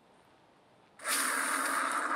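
Near silence, then about a second in a sudden, loud, harsh distorted noise with a steady shrill tone running through it.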